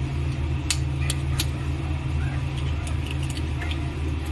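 Raw eggs tapped against a steel knife blade to crack their shells: a few sharp clicks about a second in and lighter ones near the end, over a steady low hum.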